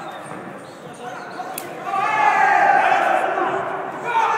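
Kickboxing strikes landing in the ring: a sharp smack about a second and a half in, with duller thuds around it. Right after the smack, loud shouting from voices around the ring.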